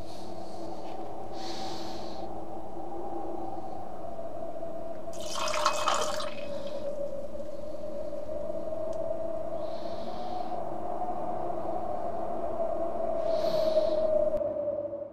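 A steady, slightly wavering low drone holds throughout, with soft hissing swells over it and a brief louder rush of noise about halfway through.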